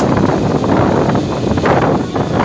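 Wind rushing over the microphone from a moving passenger train, over the train's steady running noise, in uneven gusts.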